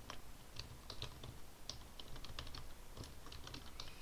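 Computer keyboard typing: a rapid, irregular run of light key clicks as a word is typed out.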